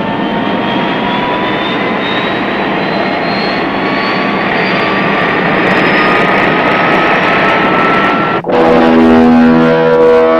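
Jet engine on a carrier deck running up to full power before a catapult launch: a whine that rises slowly in pitch over a loud rush of noise. About eight and a half seconds in, it cuts off abruptly and music with held notes takes over.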